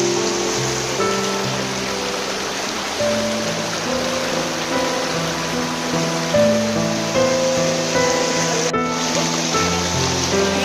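Background music of held notes, changing every second or so, over a steady rush of fast-flowing floodwater.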